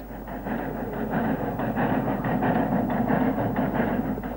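Snowdon Mountain Railway steam rack locomotive working uphill, pushing its carriage, a steady rapid run of chuffs over a continuous mechanical rumble.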